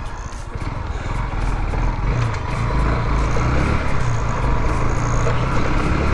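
Motorcycle engine running as the bike rides along a street, with wind and road noise on the onboard microphone. It grows louder over the first three seconds as the bike picks up speed, then holds steady.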